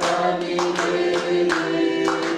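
A congregation singing together, with hand-clapping in time.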